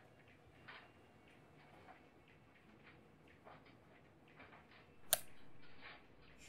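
Pencil writing on notebook paper: faint, irregular scratches of short strokes. About five seconds in comes a sharp click, followed by a brief steady hiss.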